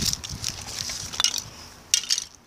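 Low rustling handling noise with a few light clicks, the sharpest just before the end: a handheld phone being moved about over the disassembled plastic blaster parts.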